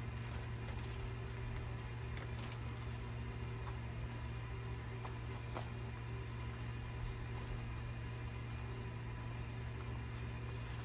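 A steady low machine hum, with a few faint ticks and rustles as a small plastic nursery pot and potting soil are handled.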